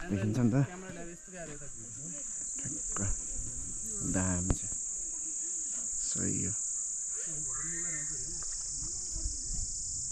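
Steady high-pitched buzz of an insect chorus in mountain forest, with people talking briefly, loudest in the first second.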